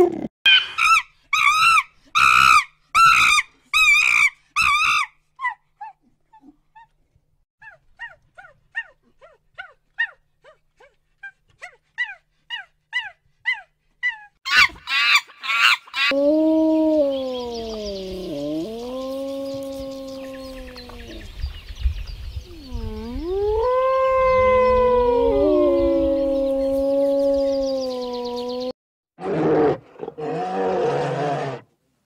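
Short, high-pitched chirping calls about twice a second, typical of a cheetah, which fade away over the first several seconds and return louder near the middle. From about halfway on come long, wavering howl-like animal calls, each held for a few seconds and gliding up and down in pitch, over a low rumbling background.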